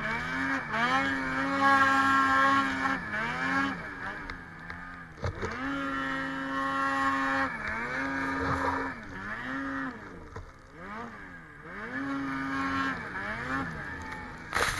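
Ski-Doo 850 E-TEC two-stroke twin snowmobile engine revving hard under load in deep powder. The revs hold high, then drop and climb back again and again as the throttle is let off and reapplied.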